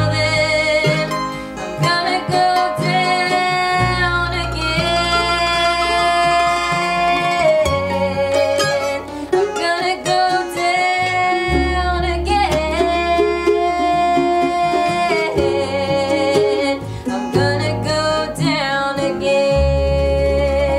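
Live gospel song from an acoustic string band: acoustic guitars and a mandolin playing under singing, with several long held notes.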